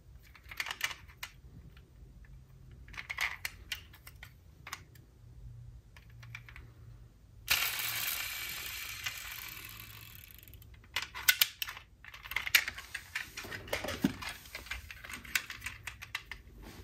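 Die-cast metal model cars being handled: clusters of small clicks and metallic taps as the doors are worked and the cars are moved in and out of the box. About halfway through, a sudden rushing noise starts and fades away over about three seconds.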